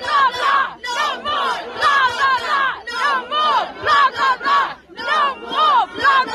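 A large crowd of protesters chanting and shouting together in a loud, rhythmic, sing-song cadence, many voices rising and falling about twice a second.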